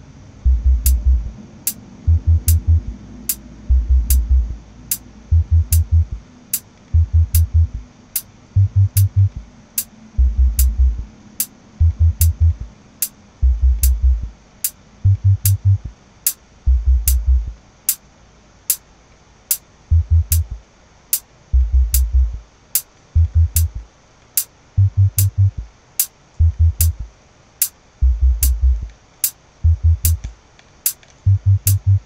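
Electronic track looping from a music production program: a low bass and kick pattern pulsing in short groups, with a thin high hi-hat tick coming steadily, about five ticks every four seconds.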